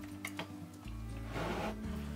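Background music with low sustained tones, and about one and a half seconds in a brief swish of water as a steel part is lifted out of a bucket of rinse water.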